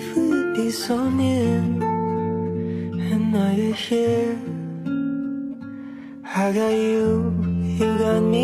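Slow pop song: acoustic guitar with a soft male vocal.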